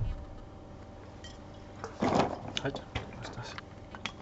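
A quick run of light clicks and knocks from wine bottles and glasses being handled on a tasting table, starting about two seconds in, with a short spoken "Halt" among them.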